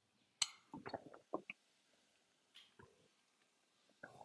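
A sharp click about half a second in, then a few faint, short smacks: mouth noises of tasting a just-taken sip of beer.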